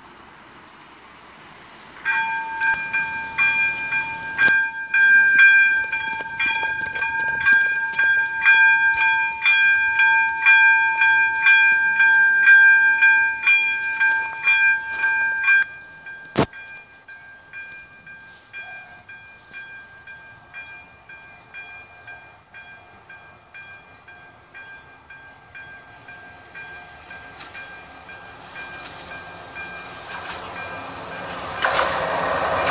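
Level crossing warning signal ringing in rapid, even strokes of a steady ringing chord, switching on suddenly about two seconds in. From about sixteen seconds it is much fainter, and near the end the noise of an approaching train rises.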